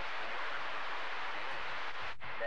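CB radio receiver static: a steady hiss on an open channel with no station coming through.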